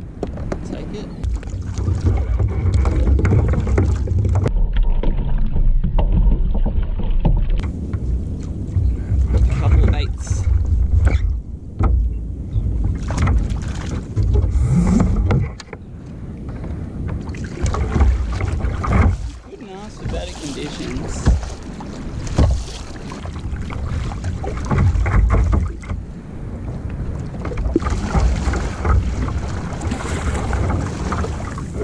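Wind buffeting the microphone over water washing against a kayak hull. In the second half come paddle strokes, a splash every second and a half to two seconds.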